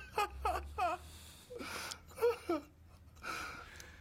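Men laughing in a high-pitched, wheezing way: short squealing bursts that fall in pitch, broken by breathy gasps for air.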